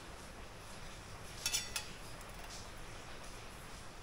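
Steel motorcycle fork spring, its end coil heated red-hot, clinking on a metal plate as it is stood on end and pressed down to bend the hot coil flat: a quick cluster of two or three sharp metallic clinks about a second and a half in.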